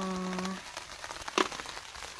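Light rain pattering, with small scattered ticks and one sharp click a little past halfway.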